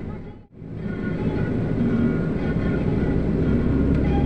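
Steady rumbling travel noise of a moving vehicle, heard from on board. The sound drops out sharply for an instant about half a second in, then carries on.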